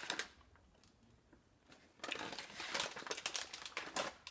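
Plastic snack bag crinkling as a hand rummages in it, a short rustle at first and then about two seconds of steady crackling near the end.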